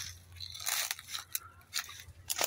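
Dry grass and brush rustling and crackling, with a few sharp clicks scattered through it.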